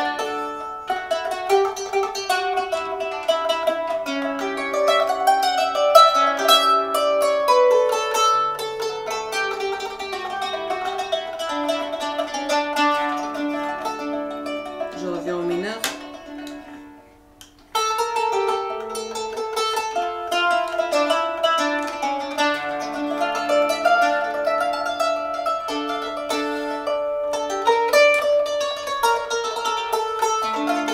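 Qanun (Arabic plucked zither) played with finger plectra: a flowing melodic passage of quick plucked notes, ringing and overlapping. About halfway through the notes die away, one note bends in pitch, and the playing then resumes abruptly. The player is retuning strings by quarter-tones with the instrument's levers as she plays, moving from D minor to D major.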